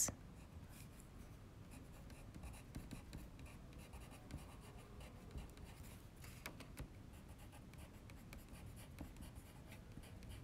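Caran d'Ache Luminance coloured pencil lettering on sketchbook paper: faint, short scratchy strokes with small pauses between letters.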